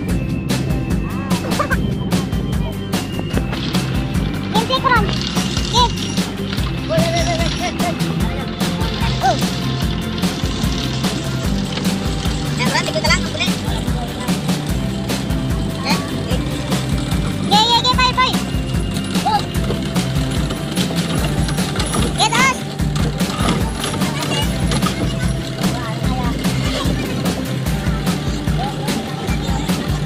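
A boat engine running steadily under music, with short bursts of voices now and then.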